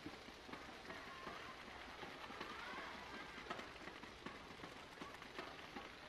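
Faint applause from a small crowd of spectators in a large sports hall: a steady patter of many scattered claps.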